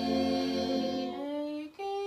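A small group of mixed voices singing a Tongan hiva 'usu hymn unaccompanied, holding long sustained notes. The pitch shifts about a second in, and the sound breaks off briefly near the end before the next held note comes in.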